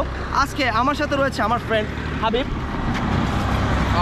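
A man talking for the first two seconds, then a road vehicle passing close by: a steady rush of engine and tyre noise with a low rumble, filling the last second and a half.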